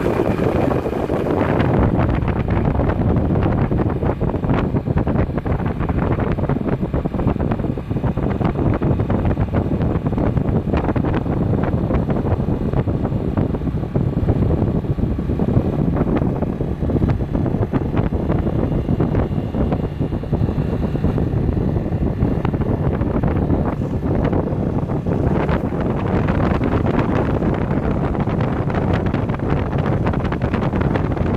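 Wind buffeting the microphone in a loud, steady, gusty rumble, over the wash of ocean surf breaking on the beach.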